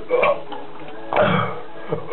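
A person burping twice after gulping down a lot of apple juice through a straw; the second burp is longer and louder.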